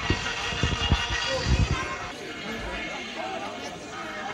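Crowd chatter and background music at a busy carnival gathering, with a few low thumps in the first two seconds.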